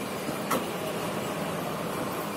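Steady background noise with one short click about half a second in.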